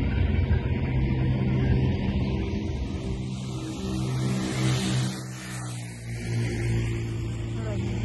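Steady low hum of a car's engine and road noise while driving, with a dip and a sweep in pitch about five to six seconds in, as of a vehicle passing.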